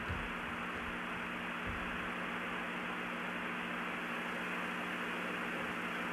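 Steady hiss and low electrical hum of an old live-broadcast audio feed carrying dead air, with no voices.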